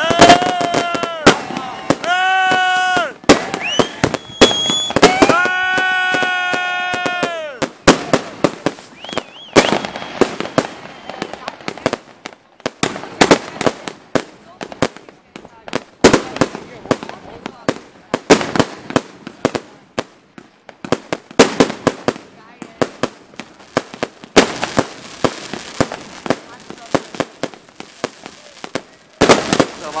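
Fireworks going off. Whistling shots give several sustained high whistles, about a second each, in the first eight seconds. After that comes a long run of sharp bangs and crackling bursts, with a denser crackle near the end.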